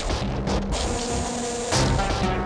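Background score music with sustained tones.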